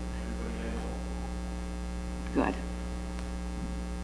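Steady electrical mains hum, a low constant drone in the sound system, with one short spoken word a little past halfway.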